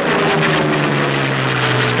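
Propeller aircraft engine drone, steady and loud, sinking slightly in pitch.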